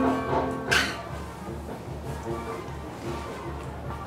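Acoustic guitar's final chord ringing and fading away, then a single bright strike across the strings a little under a second in. After that only faint, irregular low sounds remain.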